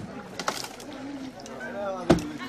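One sharp knock about half a second in as a long pole is driven against wooden boat timbers, with voices in the background.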